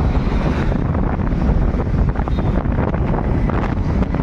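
Wind buffeting the microphone: a loud, steady rumble strongest in the low end.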